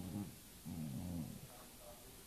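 Dog growling twice in a low voice: a short growl, then a longer one about half a second later.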